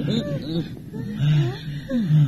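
A frightened man's short wordless moans and whimpers, a string of brief sounds rising and falling in pitch.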